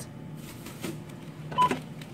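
A single short electronic beep from a checkout barcode scanner about one and a half seconds in, as an item is rung up, over steady low background noise.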